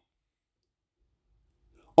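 Near silence: a pause between a man's spoken phrases, dead quiet at first with only a faint low rumble later, before his voice comes back in at the very end.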